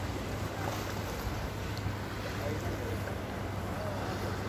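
A small motorboat's engine running steadily, a low even hum under wind and water noise.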